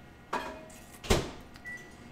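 Microwave oven being worked: a clunk, then a louder thump of the door shutting about a second in, followed by a single short, high keypad beep.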